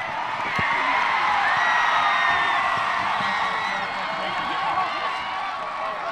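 Stadium crowd cheering and shouting, swelling about a second in, in reaction to a touchdown dive.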